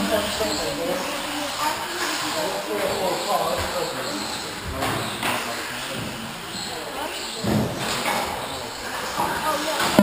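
Small brushless electric RC cars racing on an indoor track, a steady hiss of motors and tyres with a few short knocks, under people's voices echoing in a large hall.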